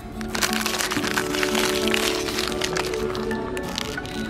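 Clear plastic hardware bags crinkling and crackling in a hand as they are picked up and handled, over background music.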